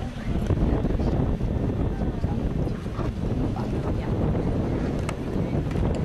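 Wind buffeting a camcorder microphone: a steady, loud, low rumble.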